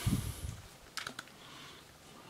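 Plastic action figure being handled: a low bump of handling noise at the start, then a couple of light plastic clicks about a second in as its joints are moved.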